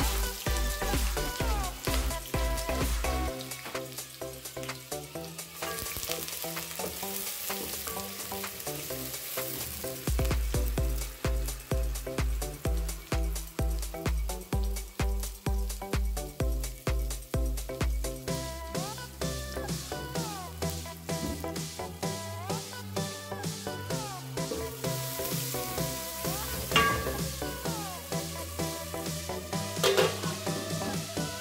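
Sliced onions sizzling as they fry in oil in an aluminium pot, under background electronic music with a steady bass beat. A single ringing metal clink sounds near the end.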